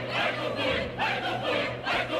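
Opera chorus singing in quick, short syllables over an orchestra holding low sustained notes.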